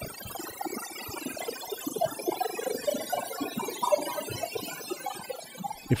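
Absynth 5 software synth's Aetherizer granular effect running through a high-resonance bandpass filter whose frequency is randomized. It makes a "glassy" cloud of short pitched grains that jump about at random in pitch, mostly in the midrange.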